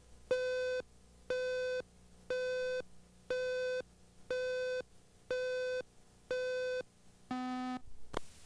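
Electronic countdown-leader beeps: a steady beep about once a second, each half a second long, seven alike, then a final beep at a lower pitch near the end.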